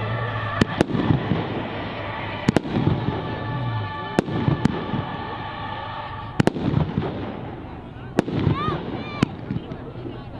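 Aerial fireworks shells bursting with sharp bangs, about ten in all, several in quick pairs. A few short rising whistles come near the end.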